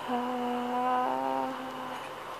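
A woman humming one long, steady note at an unchanging pitch while she types on a phone, its tone shifting about halfway through. A light click comes just before it.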